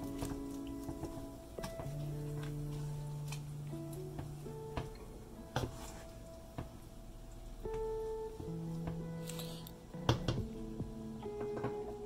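Background music of held notes, with occasional light knocks of a wooden spoon against an enamel pot as the stew is stirred.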